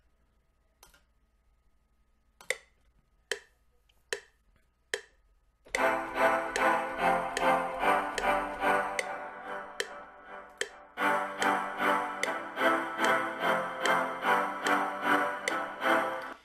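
A metronome count-in of short ticks about 0.8 s apart, then chords played live on a reFX Nexus software instrument in a simple progression, with a short break about 11 seconds in. The chords are played a little off the beat.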